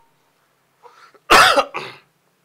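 A man coughing: a faint intake of breath, then one loud cough about a second and a half in, followed at once by a shorter, weaker second cough.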